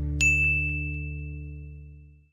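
A single bright ding sound effect a moment in, ringing on over the last low chord of the outro music. Both die away together.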